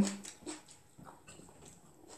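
A woman's short voiced hum trails off at the very start. It is followed by faint eating sounds: quiet chewing and small scattered clicks.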